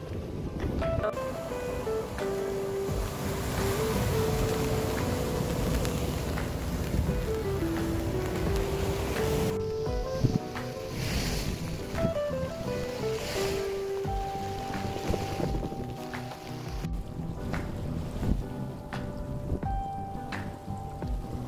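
Wind buffeting the microphone and sea surf, a rough rushing noise that is strongest in the first half, under an edited-in background music melody of single stepped notes.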